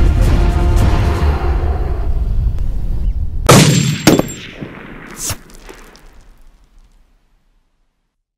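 Dramatic film soundtrack music, then about three and a half seconds in a single loud gunshot with a metallic clang and ringing. Two fainter sharp hits follow, and the sound dies away to silence.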